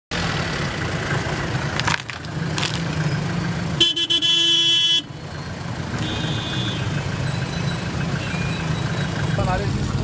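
Street traffic with engines running, and a vehicle horn blaring for about a second near the middle, followed by a fainter shorter honk. A voice starts just before the end.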